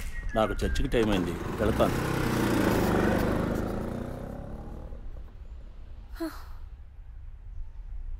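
Motor scooter riding off: its engine sound builds to a peak about three seconds in, then fades away as it leaves.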